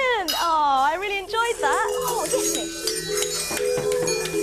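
A high voice gliding up and down in pitch for the first second and a half, then, from about two seconds in, light music of steady held notes at several pitches.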